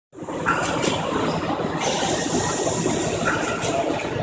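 Steady mechanical clatter and hum of running machinery, dense and continuous.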